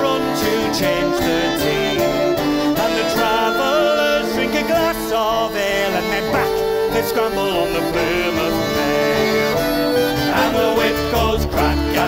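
Live acoustic folk music: a band with cello accompanying a song sung by a group of men, playing on without a break.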